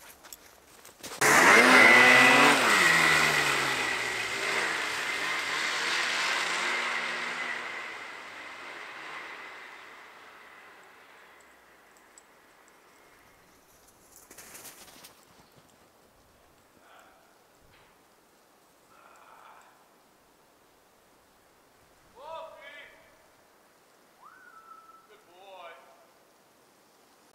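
An engine starts abruptly about a second in, its pitch dropping as it fades away over roughly ten seconds. A few short, faint whines follow near the end.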